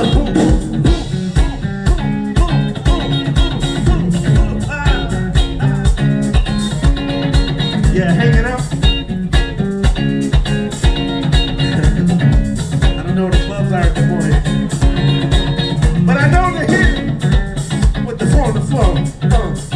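Live funk band playing with a steady beat, an electric rhythm guitar featured over bass and drums.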